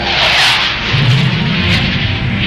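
Fighter jet engine noise as a formation flies past: a rushing noise swells at the start, and a deep rumble joins about a second in.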